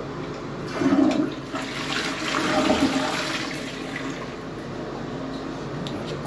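Tank toilet flushed by its lever: a sudden rush of water about a second in, loudest over the next couple of seconds, then dying down as the bowl empties.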